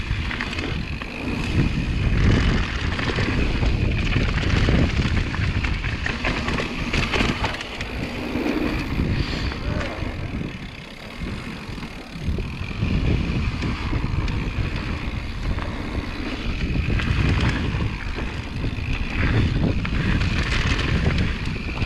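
Mountain bike rolling fast down a rough dirt and rock singletrack: wind buffeting the microphone over the rattle and crunch of the tyres and bike on the trail. It eases a little about halfway through.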